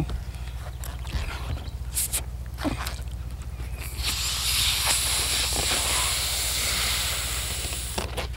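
A man blowing into a rubber balloon to inflate it: a steady breathy rush of air begins about halfway through and lasts to the end. Before it, a couple of light clicks from handling the balloon, over a low constant hum.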